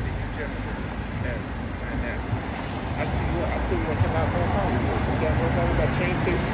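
Steady low rumble of road traffic, cars passing on a busy city street, with a voice talking faintly and indistinctly over it.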